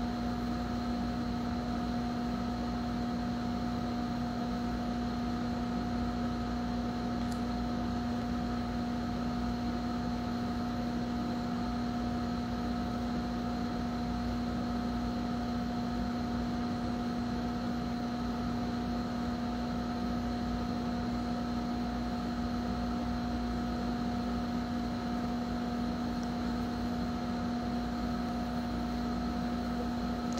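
A steady, unchanging hum with a few fixed pitches over a background hiss, from equipment running in the room.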